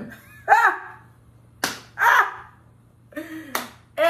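A woman laughing in short bursts, with two sharp hand claps, one between the laughs and one near the end.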